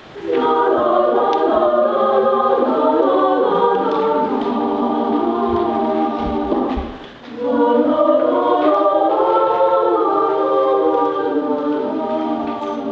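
A choir singing sustained chords, with a brief pause between phrases about seven seconds in.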